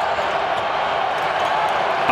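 Basketball players celebrating a game-winning shot in a huddle: many voices shouting and cheering at once, a steady din with no single voice standing out.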